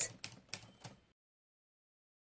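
A few faint clicks, then the sound track drops to dead silence about a second in.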